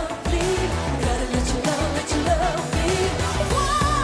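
Live pop song: a woman singing over keyboard backing and a steady beat.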